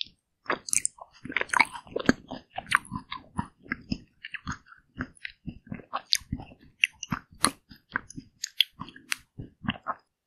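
Close-miked chewing of a bite of frozen yellow watermelon ice cream bar: a dense, irregular run of short crunches and wet mouth clicks, several a second.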